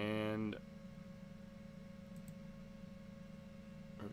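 A short bit of a man's voice at the start, then quiet room tone with a steady hum. Two faint computer mouse clicks come a little over two seconds in.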